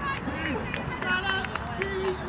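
Several voices shouting and calling out across a football pitch, over a steady low wind rumble on the microphone.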